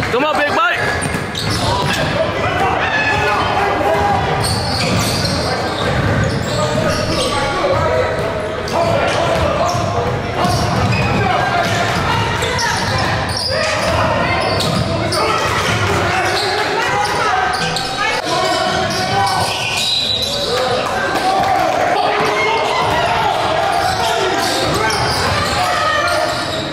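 Basketball game sound in a large gym: a basketball dribbling on the hardwood court, among the voices of players and spectators. Everything echoes in the hall.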